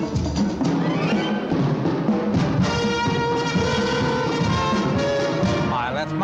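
Orchestral dance music from a film musical, driven by drums and percussion. About halfway through, brass comes in holding long notes.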